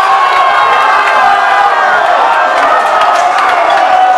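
Crowd of football fans cheering and shouting in celebration of a win, many voices at once, loud and unbroken.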